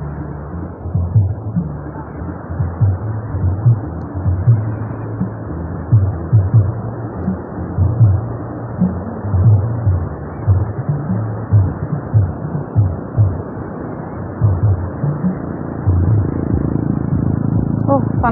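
Surf washing onto a sandy beach, with wind buffeting the microphone in irregular low thuds.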